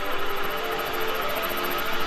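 Background electronic music with sustained, held tones.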